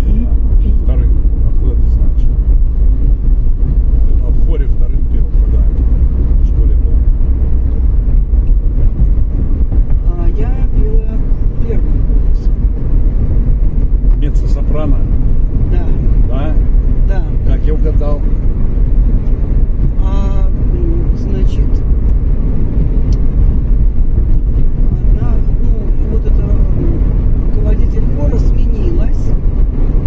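Steady low rumble of road and engine noise inside a moving car's cabin, with faint voices now and then under it.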